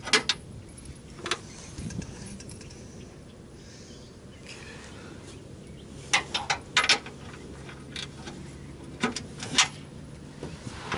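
Scattered sharp metallic clicks and clinks of a socket wrench and hand tools on the bumper mounting bolts, with a quick run of about five clicks some six seconds in.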